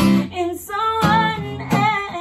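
Acoustic guitar strummed while a woman sings over it, her held notes wavering.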